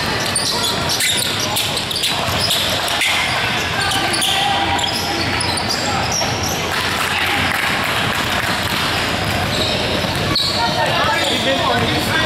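Basketball bouncing on a hardwood gym floor during play, with scattered knocks against a continuous echoing hubbub of players' and spectators' voices in a large hall.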